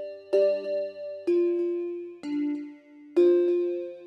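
Synth bell chords in a minor key, a new chord struck about once a second and each ringing out and fading. The bell patch is run mono through a vocoder for a digital edge, then into a phaser.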